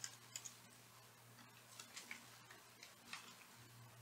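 Faint, irregular clicks of computer keyboard keys being typed, over a low steady hum; overall near silence.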